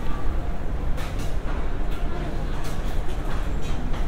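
Airport terminal café ambience: a steady low rumble under an indistinct murmur of voices, with a few light clicks and knocks scattered through.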